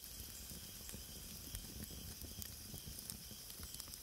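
Faint steady hiss with scattered soft crackles.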